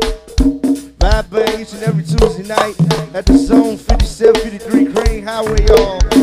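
Go-go band percussion groove: conga hits at several pitches over a drum kit, with sharp clicking accents, in a steady, dense beat.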